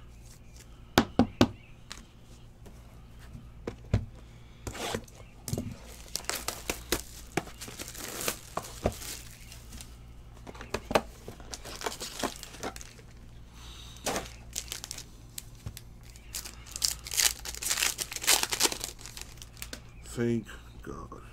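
Plastic and foil card-pack wrappers crinkling and tearing as trading cards are unwrapped and slid into plastic sleeves, with a few sharp clicks about a second in, over a low steady hum.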